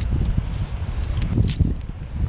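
Wind buffeting the microphone in a steady low rumble, with a few sharp metallic clicks about a second and a half in from carabiners and an aluminium rappel device being handled.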